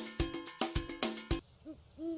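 Upbeat jingle music with regular percussion hits, stopping about one and a half seconds in. It is followed by two short owl hoots near the end.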